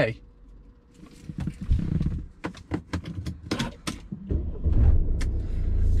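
Mercedes-Benz SLK250 CDI's 2.2-litre four-cylinder diesel engine starting about four seconds in and settling into a steady low idle, after a few clicks and a brief low rumble.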